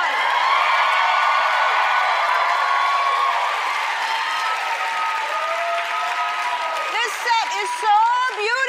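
Studio audience applauding and cheering steadily, with voices whooping over the clapping. It dies down near the end.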